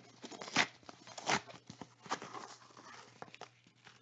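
A paper card pack being torn open by hand, with two louder rips about half a second and just over a second in, then softer crinkling and rustling of the wrapper that dies away near the end.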